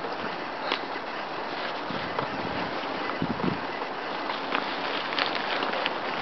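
A steady outdoor rushing noise with scattered short clicks and taps.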